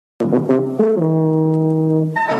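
Low brass theme music begins a moment in: a quick run of short notes that falls to one long held low note.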